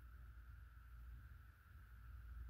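Near silence: faint room tone with a steady hum, while the magnification ring of a Primary Arms PLxC 1-8 rifle scope is turned without any audible noise, described as "absolute silence, like it's rolling on ball bearings."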